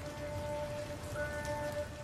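Steady rain falling as an even hiss, under a few soft, held music notes.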